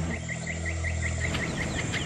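An insect, such as a cricket, chirping in a regular series of short calls, about five or six a second, over a low steady hum that fades out about one and a half seconds in.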